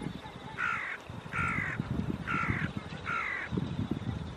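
A bird calling four times in an even series, each call about half a second long and spaced just under a second apart.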